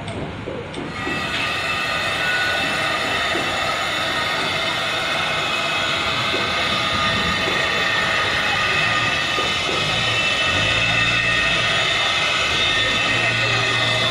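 Loud, steady mechanical noise that builds up about a second in and then holds, with several high whining tones over a continuous hiss and a low hum near the end.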